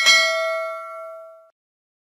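Notification-bell sound effect: one bright metallic ding with several ringing tones, fading over about a second and a half and then cutting off suddenly.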